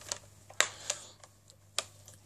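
Handling noise: about six light, irregular clicks and taps as hands move and grip a bass guitar body close to the microphone.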